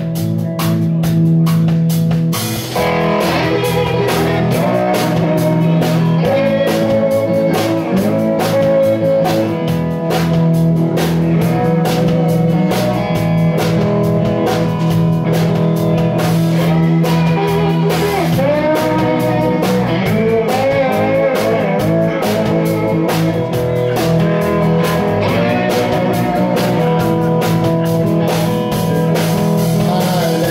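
A live blues band playing an instrumental break: an electric guitar lead with bent notes over electric bass, a second electric guitar and a drum kit keeping a steady beat.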